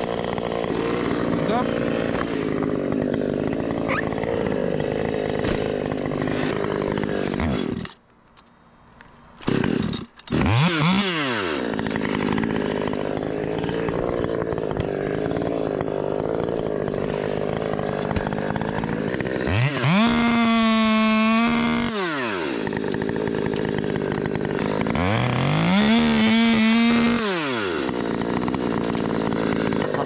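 Two-stroke top-handle chainsaw running, briefly cut off about eight seconds in. It is then throttled up three times: a short rev a couple of seconds later, then two longer revs to a steady high whine of two to three seconds each, around the two-thirds mark and again near the end, each falling back to idle.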